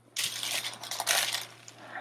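Paper sticker-book pages and a thin translucent sheet rustling and crinkling as they are handled, in two crisp stretches over the first second and a half.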